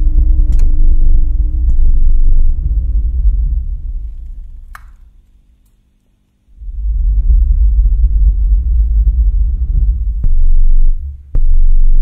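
Loud, deep electronic drone played through loudspeakers as live improvised music. It fades away to a brief silence about halfway through, then comes back suddenly, with a few sharp clicks and one short higher tone over it.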